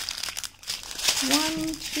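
Small clear zip-lock plastic bags of diamond-painting drills crinkling as a hand handles and flips through them, with a brief lull about half a second in.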